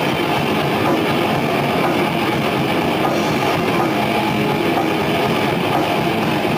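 Death metal band playing live: electric guitars and drums in a dense, continuous wall of sound at full volume.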